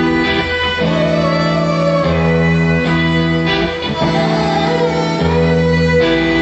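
Rock band playing a song live, with held guitar chords that change every second or so.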